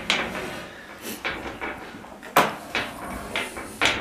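Several sharp knocks and rattles of a wire-mesh cage panel as a lion cub plays against it, the loudest about two and a half seconds in and again just before the end.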